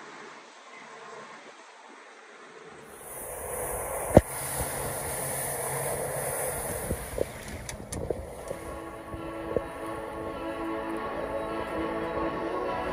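Wind and rushing water from a boat under way, louder from about three seconds in, with a sharp knock shortly after. Background music comes in past the middle.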